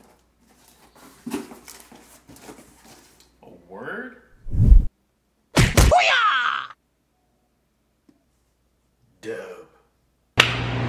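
A cardboard shipping box being handled and its flaps opened, with papery rustling and crackling, then a heavy thump about halfway through. Short wordless vocal sounds come just before and after the thump.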